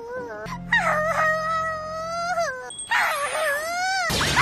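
A cartoon girl's high-pitched, tearful 'au au' whimpering cry, two long wavering wails, one about a second in and one from about three seconds in, over a steady low background music tone.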